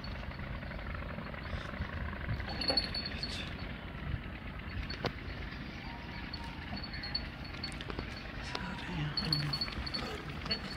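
Faint voices of men talking at a distance over a steady outdoor background hiss, with a single sharp click about five seconds in.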